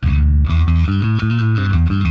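Electric bass played through a Line 6 Helix modern clean bass patch (amp, cab and Obsidian 7000 drive), with the simple EQ after the cabinet switched off: a short riff of loud, low, ringing notes.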